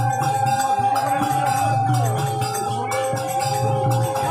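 Harinam kirtan music: rhythmic jingling hand cymbals over a low pulsing drum beat, with a long steady held note and shifting melodic notes above it.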